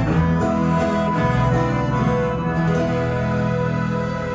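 A live folk band playing an instrumental passage, with two accordions sounding sustained chords over a steady low bass line.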